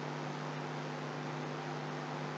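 Steady electrical hum with a faint even hiss.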